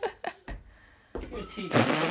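Family voices during a game of catch with a toddler: short exclamations, a dull thump about half a second in, then a loud, drawn-out excited cry starting near the end as the ball reaches the child.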